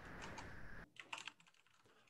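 Faint computer keyboard typing, a run of light key clicks over a low hiss. About a second in the background cuts out abruptly, leaving a few isolated clicks.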